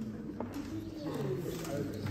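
Low, indistinct murmur of people's voices in the room, with a single soft click about half a second in.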